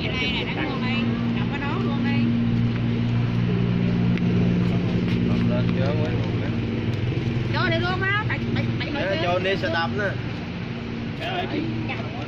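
A motor vehicle engine running with a steady low hum that fades out near the end, with people's voices talking over it in the later part.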